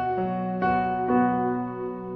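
Slow, soft background music on a piano-like keyboard, with a new note or chord struck about every half second and the last one held.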